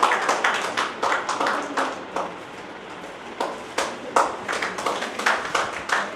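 Applause: a small group clapping by hand, with separate claps audible. The clapping thins about two seconds in and picks up again a little after three seconds.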